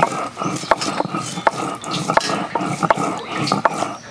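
Wet hands handling and rinsing raw catfish pieces: irregular splashing and sloshing of water with many short wet slaps and clicks as the pieces are moved onto a tray.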